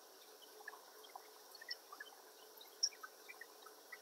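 Near silence: faint steady room tone and microphone hiss, with a faint tick about three seconds in.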